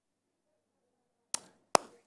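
Near silence, then two sharp clicks about half a second apart near the end, the second louder.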